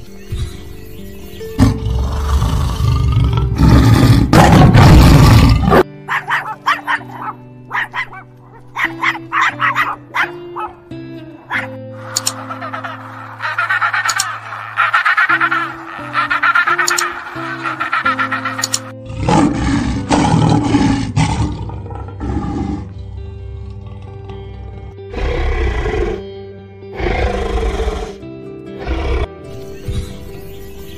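Background music with animal calls over it: tiger growls and roars near the start and again in the second half, and a run of African penguin calls in the middle.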